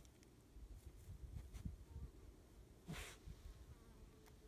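Near silence: a faint low rumble with a few soft bumps, and a brief hiss about three seconds in.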